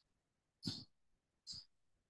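Two short breaths, about a second apart, in near silence.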